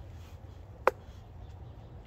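A single sharp click about a second in, over a low steady background rumble.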